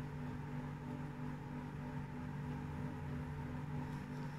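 A steady low hum with several held tones, unchanging throughout, like a fan or household appliance running.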